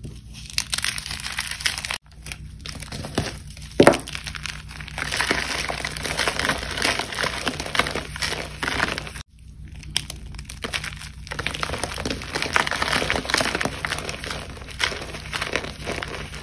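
Chunks of dried cornstarch crushed and squeezed in a hand: a dense run of fine crunching and crackling as the brittle crust crumbles to powder, with one sharp, loud crack about four seconds in.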